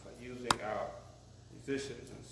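A single sharp knock about half a second in, with a man's voice faintly around it.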